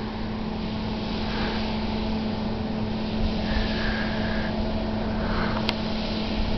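A 1.6-megawatt wind turbine running: a steady low hum over a hiss of wind, with a rumble of wind on the microphone. A faint higher tone comes in for about a second past the middle, and a single click sounds near the end.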